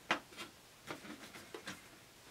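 Light plastic clicks and taps from the hood panel of a 1/10-scale RC Humvee model being handled and snapped shut: a sharp click at the start, then a few fainter ticks.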